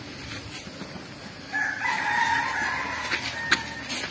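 One long, high animal call of about two seconds, starting about a second and a half in and holding a fairly steady pitch after a slight rise. A sharp click comes just after it ends.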